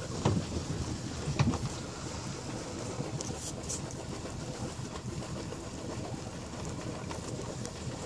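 Wind buffeting the microphone over a steady low rumble, with the rustle of a nylon gill net being hauled into a boat by hand and two short knocks early on, the second the loudest.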